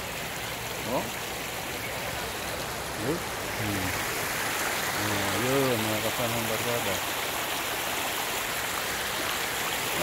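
A shallow stream running over rocks, heard as a steady rush of water, with a few short voices over it.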